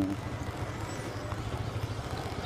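Yamaha sport motorcycle's engine running at low revs as it rolls slowly forward, a steady low, rapidly pulsing hum.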